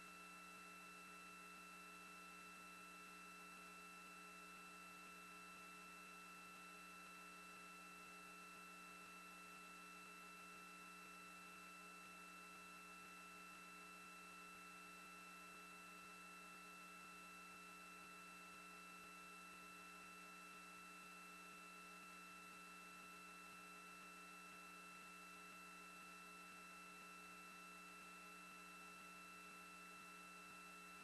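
Near silence: only a faint, steady electrical hum of a few fixed tones over low hiss.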